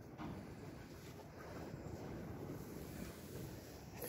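Quiet room tone: a faint, even hiss with nothing distinct standing out.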